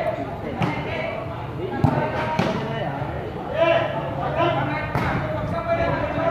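A volleyball struck by hand several times in a rally, sharp smacks with the loudest about two seconds in, over the steady chatter of spectators' voices.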